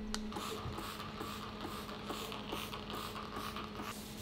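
Wooden worktable being sprayed with cleaner from a trigger spray bottle and wiped with a cloth: a rhythmic swishing about two or three strokes a second over a steady hum, stopping just before the end.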